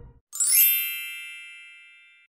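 A single bright, bell-like chime, struck once and ringing out in several high tones that fade away over about a second and a half.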